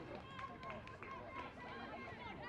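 Faint, distant voices of people calling out on a football pitch, several at once.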